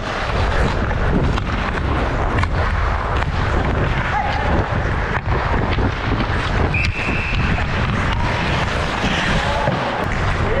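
Skating on an ice rink heard through a body-worn action camera: steady wind rumble on the microphone and the scrape of skate blades on ice, with scattered sharp clicks of sticks and puck.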